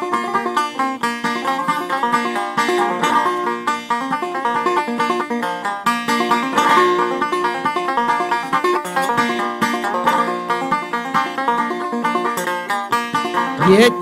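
Old-time string band playing an instrumental break between sung verses, with banjo to the fore over a steady plucked accompaniment. The voice comes back in at the very end.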